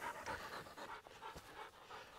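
A hunting dog panting faintly, hot and worn after working and retrieving grouse in the heat.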